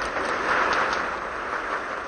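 Audience applauding at the close of a speech, swelling about half a second in and then slowly dying down.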